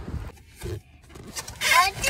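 Outdoor background noise that cuts off abruptly, then a quiet stretch and a person's voice beginning near the end.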